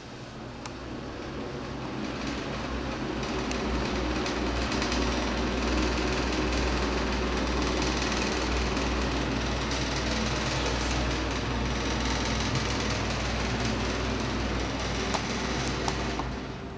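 Ceiling exhaust fan behind a round louvered grille running: a steady rush of air over a low hum, growing louder over the first five seconds and then holding level.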